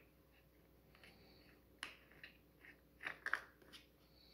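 Plastic blade cap being screwed onto the hub of a Silvercrest STV 30 A1 desk fan: a few faint plastic clicks and scrapes, one a little under two seconds in and a louder cluster around three seconds.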